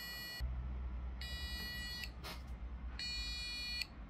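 Electronic buzzer of a home-built Arduino device beeping as it boots: a high, buzzy tone that cuts off just after the start, then two more beeps of under a second each, about two seconds apart, with a click between them. These are the startup beeps of the freshly reflashed device, which starts up normally.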